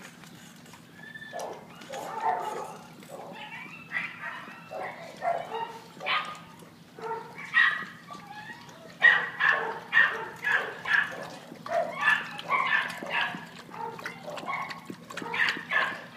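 Dogs barking in a shelter kennel, a run of short barks that come thickest in the second half, over a steady low hum.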